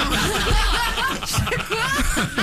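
Several people laughing and chuckling together.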